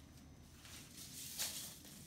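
Florist's ribbon rustling faintly as it is pulled and wound into a loop, with one brief swish about one and a half seconds in.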